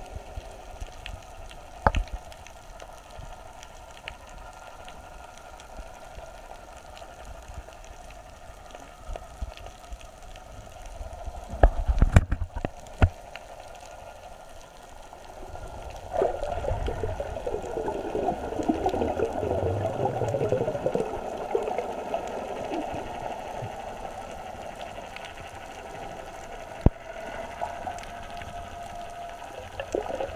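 Underwater sound heard through a camera's waterproof housing: a low, muffled wash of water with a few sharp knocks, the loudest cluster about twelve seconds in. From about halfway through comes a stretch of bubbling, gurgling water that fades back to the wash.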